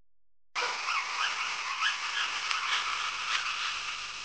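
Repeated short chirping animal calls over a steady hiss, like a recorded nature ambience, starting suddenly about half a second in.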